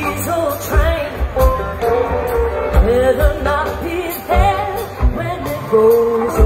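Live rock band playing, heard from the crowd: a woman sings a gliding lead melody over electric bass and a drum kit with a regular kick-drum beat and cymbals.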